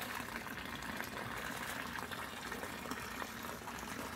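A steady, even hiss of outdoor background noise, with no distinct events.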